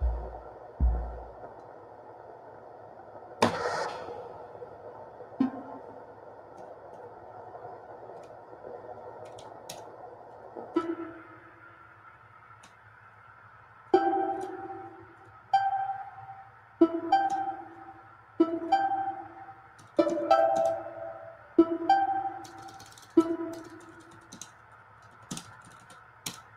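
Electronic music from a Eurorack modular synthesizer. Deep kick-drum hits stop about a second in, leaving a held synth drone with a short noise burst. From about halfway on, short plucked synth notes repeat roughly every one and a half seconds, each dying away quickly.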